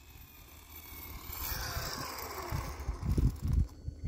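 Electric RC car, a stretched Traxxas Bandit on a 4S battery, driving back in: its motor whine falls in pitch as it slows, over a rising hiss. A few low rumbles come near the end.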